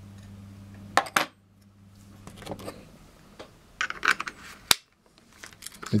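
A Nikon camera body being handled and fitted with a lens adapter: a loud double click about a second in, then scattered small clicks and rattles, and one sharp click near the end. A low steady hum stops just after the first clicks.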